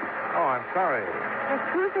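Voices in an old radio drama recording: short spoken exclamations, several falling in pitch, with the sound cut off above the mid-highs as on an old broadcast transfer.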